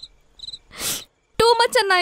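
A few faint short high chirps, cricket-like, and a breathy sigh in the first second. Then, about one and a half seconds in, a loud high-pitched wavering voice starts, falling in pitch like a whimper.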